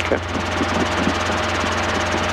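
Robinson R22 helicopter in flight, heard from inside the cockpit: the engine and main rotor make a steady drone, with a thin steady tone above it.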